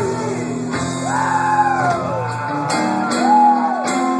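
Live rock band with an electric guitar lead line of bent, sliding notes over bass guitar and drums, in a large hall.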